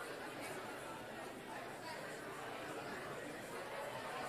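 Many people talking at once in a steady crowd chatter, no single voice standing out.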